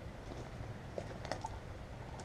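A few faint, short clicks, about a second in and twice more shortly after, over low background noise.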